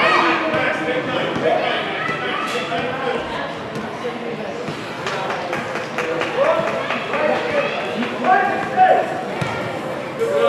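Voices of players and spectators calling out in a large indoor soccer hall, with the loudest shouts near the end. A few sharp knocks are heard among them.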